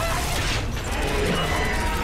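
Layered sound effects for an alien creature: gliding tones over a dense, rough bed, with a sudden swell about half a second in.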